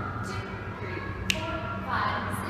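A dancer's step on a concrete floor gives a single sharp tap just past halfway, over a steady low hum and faint held tones.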